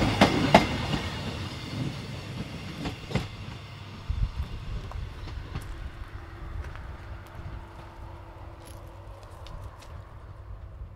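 Caledonian Sleeper train rolling past and moving away: its wheels clack sharply over the rails a few times in the first three seconds, then the rumble and clicking steadily fade as it recedes.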